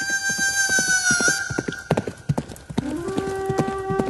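Horse hooves clip-clopping on a hard street: a run of sharp, irregular knocks. A long, high held tone drops in pitch about a second in.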